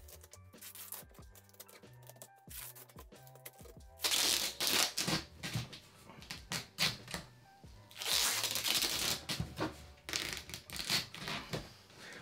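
Duct tape being pulled off the roll in long, loud, rasping rips while a cardboard box is taped shut. The first comes about four seconds in and two more near the end. Quiet background music plays underneath in the first few seconds.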